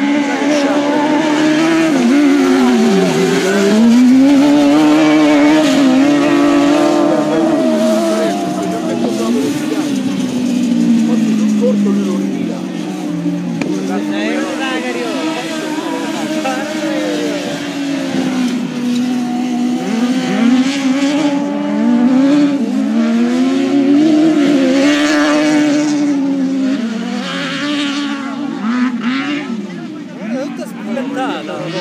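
Engines of several dirt-track race cars racing at once, their pitch rising and falling repeatedly as they accelerate, lift off and change gear through the corners.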